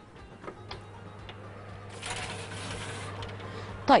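Baking tray of eclair dough being slid onto the middle rack of a hot oven: a few light clicks, then a rasping metal slide of about a second, over a steady low hum from the running oven.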